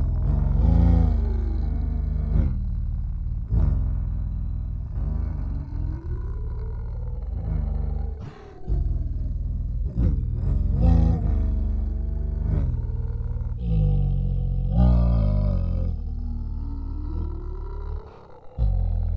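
Layered a cappella voices imitating a heavy metal band's instrumental section: a low voiced riff underneath, with a higher voice gliding up and down over it, in phrases that restart every second or two.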